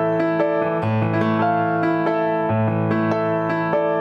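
Solo piano music played on a Korg Kronos digital workstation keyboard: a steady flow of sustained melodic notes over low bass notes that change every second or two.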